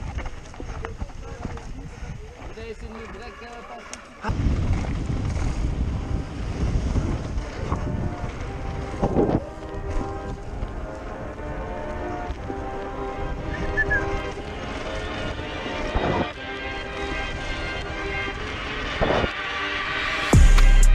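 Action-camera audio of a mountain bike riding down a dirt trail: wind buffeting the microphone over the rumble and rattle of tyres and bike on the ground. It gets suddenly louder about four seconds in as the bike picks up speed.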